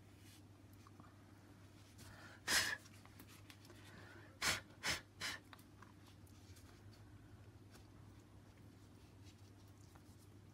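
Four short, sharp puffs of breath through the nose: one about two and a half seconds in, then three quick ones about half a second apart, over a low steady room hum.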